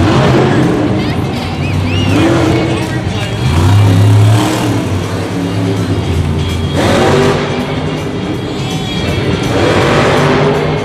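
Bro Camino monster truck's supercharged V8 engine revving in hard, rising and falling bursts during a freestyle run, with the loudest surges about a second in, around seven seconds and near the end. Arena music and a voice over the PA play under it.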